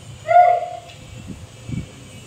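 A short, high, hoot-like vocal 'whoo' about half a second in, falling in pitch, followed by a couple of soft thumps.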